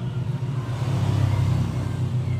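A motor vehicle's engine rumbling, growing louder about a second in and then easing off.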